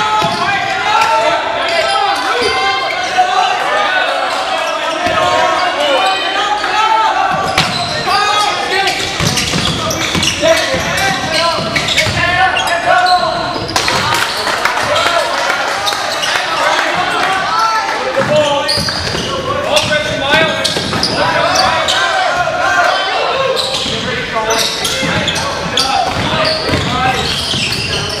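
Basketball game in a gym: a basketball dribbling and bouncing on the hardwood court amid many overlapping voices of players and spectators, echoing in the large hall.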